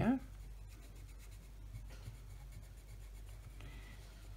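Faint scratching of a Koh-i-Noor Tri Tone colored pencil on paper, in short irregular strokes as a small area is coloured in.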